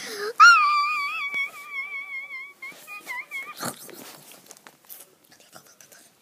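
A child's voice holding one very high, wavering sung note for about three seconds, then breaking off, followed by a few faint taps and rustles.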